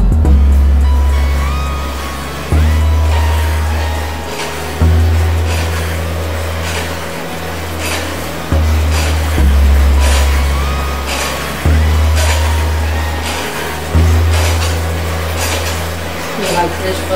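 Music with a deep bass line, each low note held for two to three seconds and entering with a jump in loudness, over a light, regular beat.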